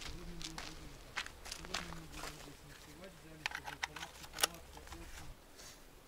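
Footsteps on a gravel and stone path: irregular sharp steps over a low hum and rumble. The sound drops away about five seconds in.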